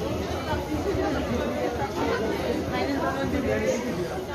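Crowd chatter: many people's overlapping voices in a busy pedestrian street, with no single voice standing out.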